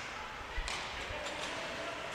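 Ice hockey rink ambience during live play: the steady scrape of skate blades on ice, with a few sharp clicks of sticks and puck.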